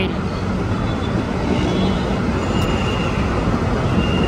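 Steady low rumble of city road traffic, with no distinct events.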